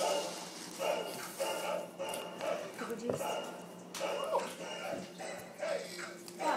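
A dog barking in a run of short barks, about two a second.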